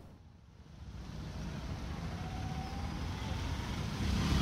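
Road traffic noise, a steady low rumble with hiss, fading in from near silence about a second in and growing gradually louder.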